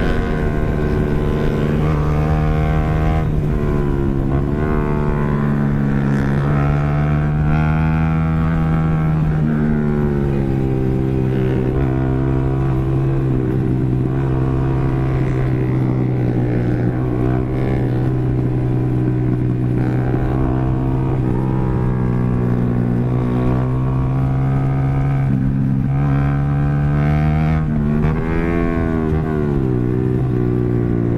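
Yamaha R15's single-cylinder engine running hard from onboard, with wind rushing past. Its note holds steady for long stretches, drops once about a third of the way in, and near the end falls sharply and climbs again as the revs come down and pick back up.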